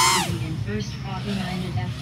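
A voice trails off with a falling pitch just after the start, leaving a steady low background hum with faint, indistinct voices in it.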